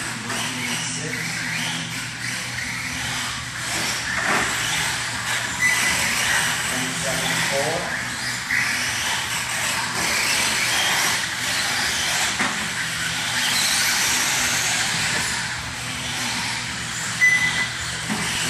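Radio-controlled car running laps on an indoor dirt track: its motor whines and its tyres scrabble on the surface, with voices in the background. A short electronic beep sounds about five seconds in and again near the end.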